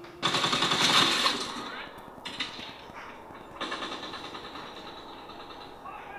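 Three runs of rapid popping like automatic gunfire, about ten pops a second. The first and loudest starts just after the beginning and fades over about two seconds; weaker runs follow about two seconds in and again about three and a half seconds in.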